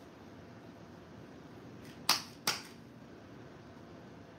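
Two sharp clicks about half a second apart, a little past the middle, over faint room hiss.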